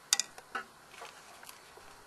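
A spoon clicks against a bowl twice in quick succession, sharp and close, a moment in. A few fainter ticks follow.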